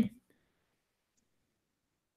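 Near silence after the last word of speech cuts off abruptly.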